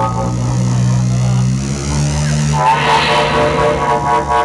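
Avant-noise band playing live: a loud, steady low drone that steps between pitches, with a higher wailing sound joining about three seconds in.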